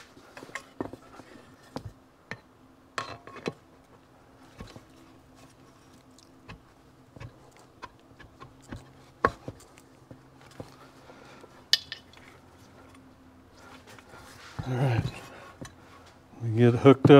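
Scattered light metallic clicks and knocks as a steel two-stroke crankshaft, its shims and an aluminium crankcase half are handled and set together on a bench, over a faint steady hum.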